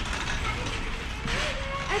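Metal flatbed cart rattling as it rolls over a concrete floor, over the steady low hum of a large warehouse store.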